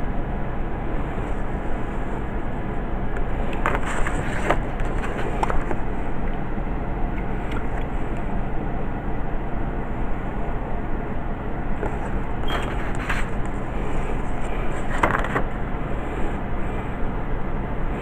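Steady background noise with a low hum, broken by a few light taps and scrapes from the wooden ruler and pencil on paper.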